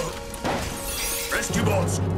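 Background score of an animated action scene, with a crash sound effect near the start and a rising sweep about one and a half seconds in.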